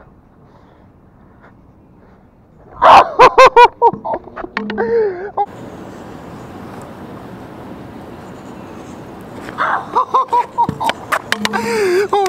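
A young man's loud shouts and laughter in short bursts about three seconds in. Then a steady rolling noise of a scooter wheel on asphalt for about four seconds, and laughter again over the last two seconds.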